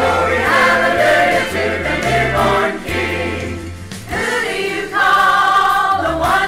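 Church choir singing a Christmas gospel song, with sustained low bass notes underneath that change every second or so.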